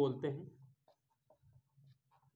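A man's voice trails off in the first half second. Then come faint, short strokes of a marker writing on a whiteboard.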